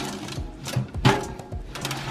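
Metal baking sheet scraping and knocking as it is slid onto the wire rack of an electric oven, the loudest scrape about a second in. Background music plays underneath.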